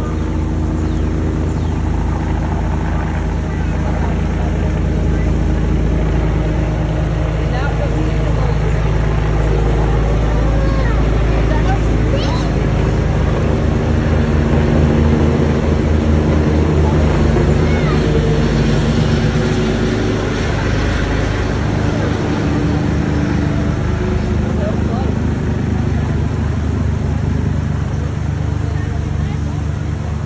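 A steady, loud low motor hum with several pitched lines, running unchanged throughout, with faint voices behind it.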